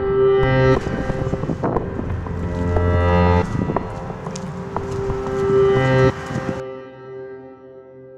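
Closing background music of held pitched notes over low tones. It cuts off suddenly about six and a half seconds in, leaving a few notes fading away.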